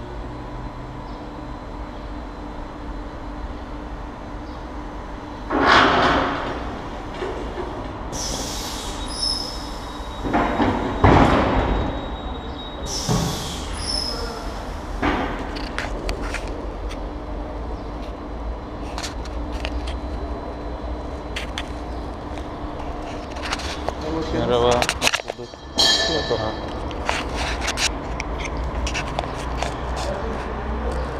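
Drive-on scissor car lift being lowered in a service workshop: several loud bursts and short high hisses of air over a steady hum, with a cluster of clanks and clatter later on.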